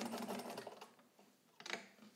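Necchi BU Nova sewing machine stitching through heavy layered fabric, a quick, even needle clatter over a steady motor hum, winding down and stopping just under a second in. A short handling noise follows near the end.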